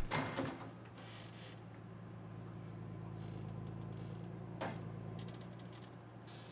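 Faint steady hum of a forwarder's engine and crane hydraulics while the crane loads logs, with one short knock a little over four and a half seconds in.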